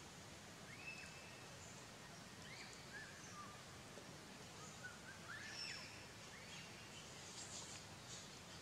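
Quiet outdoor ambience with faint, scattered short bird chirps and whistles, some sliding up or down in pitch.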